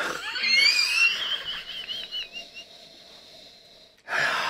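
A man's high-pitched, wheezing laughter, squeaking in quick pulses and trailing off.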